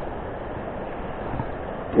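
Steady wash of noise from rushing river water and wind on the microphone.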